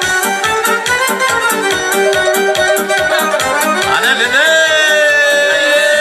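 Lively Romanian folk music with a quick, steady beat, an instrumental break between sung verses. About four seconds in, a long note slides up and is held.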